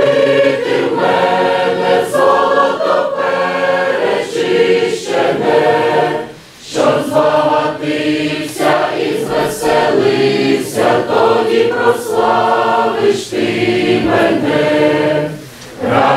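Mixed church choir of men and women singing a hymn in Ukrainian, phrase by phrase, with short pauses between phrases about six and a half seconds in and again near the end.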